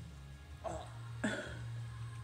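A baby eating soft baked acorn squash makes two short mouth-and-throat noises, about half a second apart and the second one louder, over a steady low hum.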